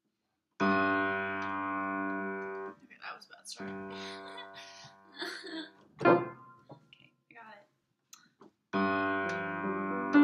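Upright piano playing held chords: one starts about half a second in and rings for two seconds before stopping short, another follows a second later, and a third comes near the end. Between the chords a person's voice is heard in short bursts, with one loud short sound about six seconds in.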